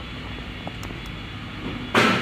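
Steady workshop hum with a faint click about two-thirds of a second in, then a sharp, loud plastic clack at the very end as the hard-plastic e-bike battery case is pressed down onto its mount.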